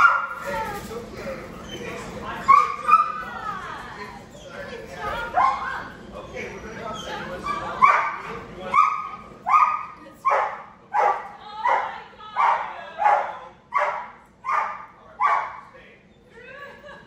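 A dog whining and yipping, then barking over and over at a steady pace of about one and a half barks a second through the second half.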